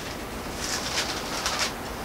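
Bible pages being turned and handled: a few brief, soft paper rustles.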